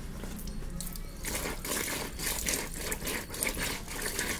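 A whole fish rubbed hard back and forth on a rough concrete floor to scrape off its scales: a quick run of gritty scraping strokes that starts about a second in.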